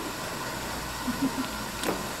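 Room tone in a hall: a steady hiss, with a faint brief murmur about halfway through and a single light click near the end.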